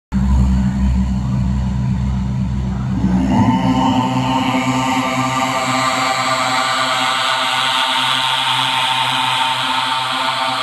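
Loud, steady musical drone: a low hum at first, joined about three seconds in by a higher held tone rich in overtones that sustains without a break.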